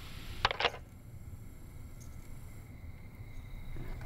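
A Phone-Mate 400S answering machine clicking off after playing back a message: a few quick mechanical clicks about half a second in, then a faint steady high electrical tone.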